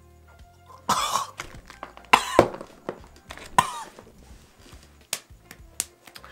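A woman coughing hard three times, about a second apart, as she clears something caught in her throat at the right tonsil.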